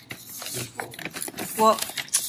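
Tissue paper rustling and plastic toiletry bottles clinking as hands rummage through a cardboard shipping box, a short spoken word near the end.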